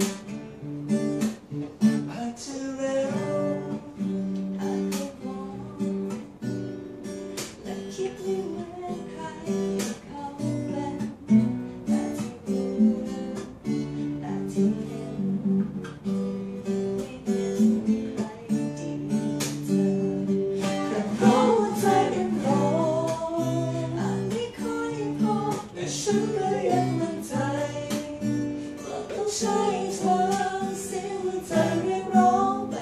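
Acoustic guitar playing chords as song accompaniment, with singing joining in about two-thirds of the way through.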